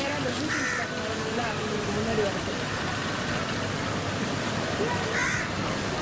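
Two short harsh bird calls, about half a second in and again near the end, over a steady outdoor background of noise and distant voices.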